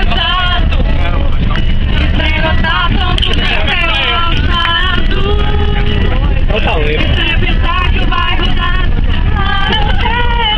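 People singing along to an acoustic guitar inside a moving bus, with several voices overlapping, over the bus's steady low engine and road rumble.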